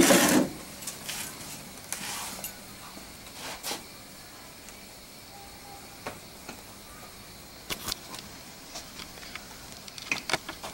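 Pen writing on a paper pad: scattered short scratches and a few light taps over a low steady background. A brief louder noise comes right at the start.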